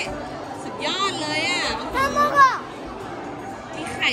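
A young child's high-pitched voice, in two bursts of excited talking about a second in and again about two seconds in, over background chatter and music.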